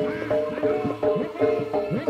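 Live jaranan ensemble music: hand drums whose strokes bend in pitch, over repeated ringing metal percussion notes, in a quick steady beat of about four strokes a second.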